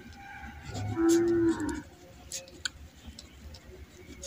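A ballpoint pen writing on paper with faint scratches and small clicks. About a second in, a single low, drawn-out call is the loudest sound and lasts under a second.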